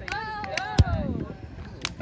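A person's long, drawn-out call that falls in pitch, with a sharp smack about a second in and a smaller click near the end.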